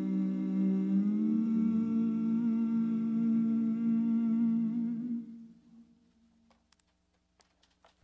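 Several voices humming a sustained chord, the hummed close of a song, moving to a new chord about a second in and fading out a little after five seconds. Then near silence with a few faint clicks.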